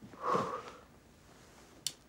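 A woman's breathy sigh, loudest about half a second in, as she turns over in bed. Near the end comes a single sharp click as her hand reaches the phone on the bedside table.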